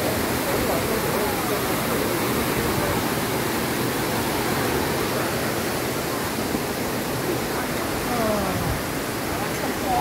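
Steady rushing of a small waterfall (Shenglong Falls) pouring over rocks into a pool, with faint talk from people nearby.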